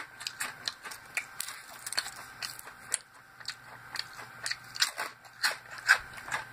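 Dehydrated beet chips crunching as they are chewed: a rapid run of crisp, brittle cracks. The taster offers the crunch as a sign that the chips were dried at too high a temperature and are almost burnt.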